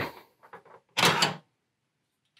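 Black metal top fan and radiator sled of a PC case being pulled out of the case frame: faint ticks, then a short burst of metal-on-metal noise about a second in.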